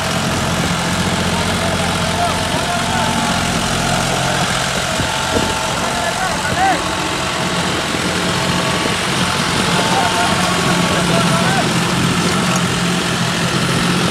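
John Deere 5310 tractor's three-cylinder diesel engine running steadily under load, driving an 8-foot rotavator that churns the soil.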